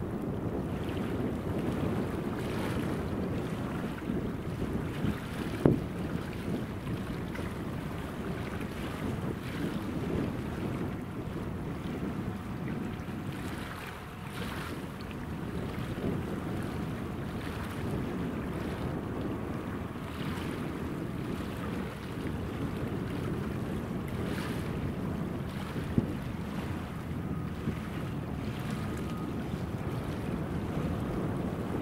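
Wind rumbling on the microphone, a steady low noise with no clear engine tone. Two brief sharp knocks stand out, about six seconds in and again about four seconds before the end.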